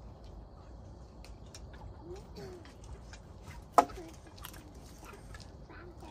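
Chopsticks tapping and scraping in stainless steel bowls, with one sharp, ringing clink of metal on metal a little under four seconds in, the loudest sound. Chickens cluck faintly in the background.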